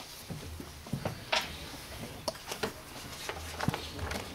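Scattered light knocks, clicks and rustles of people and things being moved about, over a steady low room hum.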